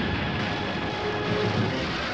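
Crash sound of an overturning truck on a film soundtrack: a dense, steady rushing roar, with orchestral music faint beneath it.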